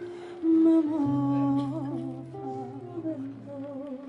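A woman singing a slow melody with vibrato, accompanying herself on acoustic guitar, with held low guitar notes under the voice.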